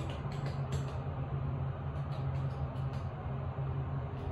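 Steady low hum inside a Kone traction elevator car, with a few faint clicks in the first second and again around the middle.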